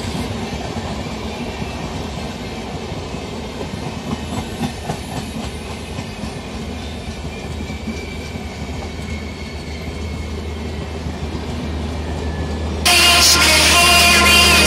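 Indian Railways passenger coaches of the Durgiana Superfast Express rolling past, a steady rumble with the clickety-clack of wheels over rail joints. Near the end a mobile phone ringtone starts suddenly and sounds louder than the train.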